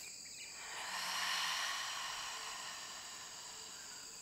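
Calm nature-ambience soundtrack with a steady high insect chorus, cricket-like. A soft hiss swells up about a second in and fades away.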